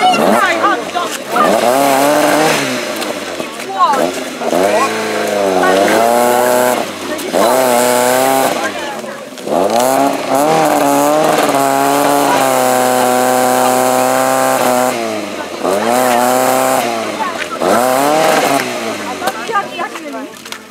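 Opel Astra GSi rally car's engine revving again and again in rising and falling surges, held high for several seconds in the middle, as the car, stuck off the road in the grass, tries to drive out.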